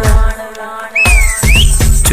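Malayalam wedding song in the kaimuttippattu style: a sung note ends, there is a short lull, then the percussion beat comes back in with a whistling tone that dips and rises.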